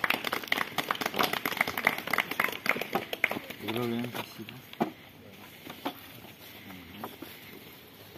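A small group of people applauding for about three seconds, with a short spoken phrase just after the clapping stops.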